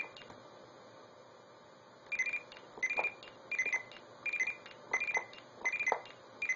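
Arduino-based blue box sending CCITT No. 4 (SS4) digit signals: about six short two-tone pulse patterns near 2 kHz, one for each key press, coming about 0.7 s apart from about two seconds in. The bursts all sound very similar, differing only in their bit sequences.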